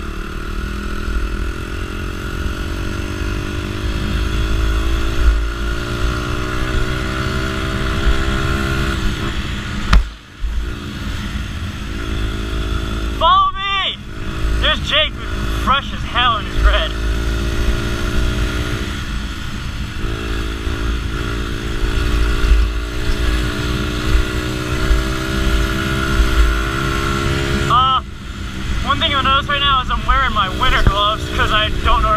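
Honda XR dirt bike's four-stroke single-cylinder engine under way, its note climbing slowly as the bike picks up speed, then a brief drop in engine sound about ten seconds in before it pulls on again with the pitch rising and falling. Low wind rumble on the helmet-mounted camera runs under the engine.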